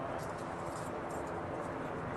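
Steady low outdoor rumble of distant machinery and traffic, with a few faint light clinks in the first half.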